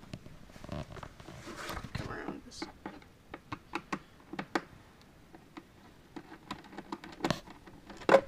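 Hand screwdriver backing screws out of a battery backpack sprayer's plastic base: irregular small clicks and scrapes of the tool in the screw heads and the plastic housing.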